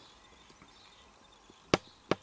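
Quiet room tone, then a single sharp knock near the end, like a hard object being handled or set down.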